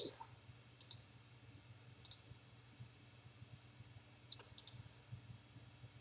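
A handful of faint computer mouse clicks, scattered and a second or two apart, over near silence with a low steady hum.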